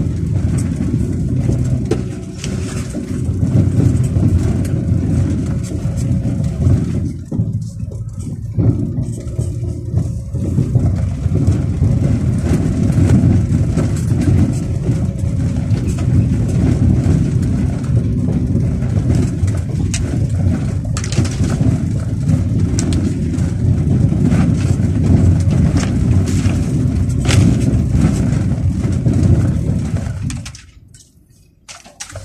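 Car engine and tyre noise heard from inside the cabin while driving slowly up a rough dirt track, a steady low rumble scattered with knocks and rattles from the bumps. The noise thins briefly about seven seconds in.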